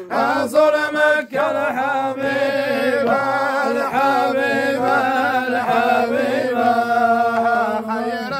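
Men chanting unaccompanied Arabic devotional praise of God and the Prophet Muhammad, with long, drawn-out, wavering notes and no instruments.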